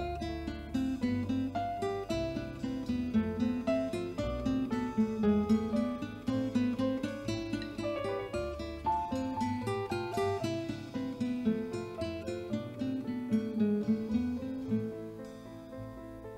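Live acoustic guitar playing an instrumental break of quick plucked notes over a bass line, with no singing.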